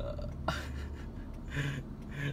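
Steady low hum of an idling car heard inside its cabin. A short low vocal sound comes at the very start, then a knock and rustling about half a second in as the phone is moved.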